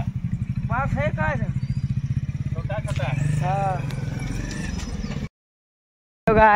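An engine idling steadily with a fast, even pulse, under a few short snatches of voices. The sound cuts off abruptly about five seconds in.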